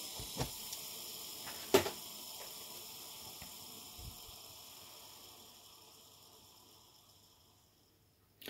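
Wheels of an old genuine Lego train bogie free-spinning on plain plastic Lego axles after a flick: a soft whir that dies away gradually over about six seconds, with a few light clicks.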